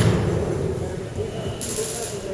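Indistinct background voices with handling noise: a sharp click as it begins and a brief hiss near the end.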